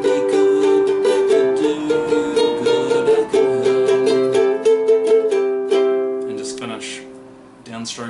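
Ukulele strummed in quick, even chord strokes, changing chord twice, then the last chord rings out and fades away: the extra ending played after the song's final verse.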